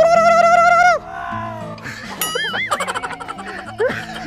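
Background music under a loud, long high-pitched call in the first second. About two seconds in comes a wobbling, whistle-like sound effect.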